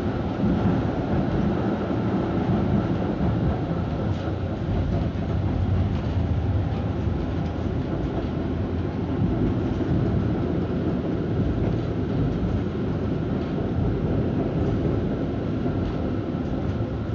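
Konstal 105Na tram in motion, heard from inside the car: a steady rumble of wheels and running gear on the rails, with faint steady tones over it.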